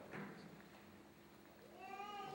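Near silence with a couple of faint brief rustles near the start. Near the end a high, drawn-out voice begins, one held note that falls slightly in pitch.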